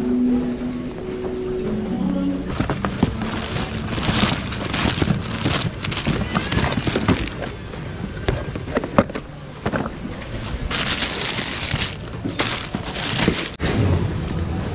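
Packaged goods being rummaged through in a store bin: boxes knocking and plastic packaging crinkling, starting about two and a half seconds in, with voices in the background.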